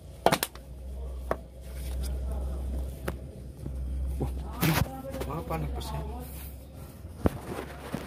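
Idling truck diesel engine giving a steady low rumble, with a few sharp knocks from the camera being handled and bumped. The rumble fades near the end.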